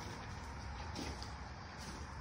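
Quiet steady low rumble and hiss of background noise, with no distinct events.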